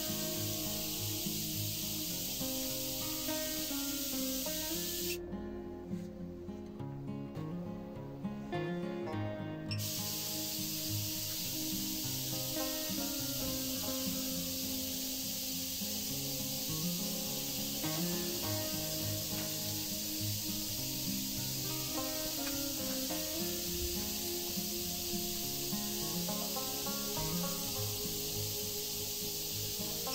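Steady high hiss of corona discharge at the electrodes of a three-stage wire-and-plate ion thruster under high voltage. It drops out for about five seconds, starting about five seconds in, then comes back. Background music plays throughout.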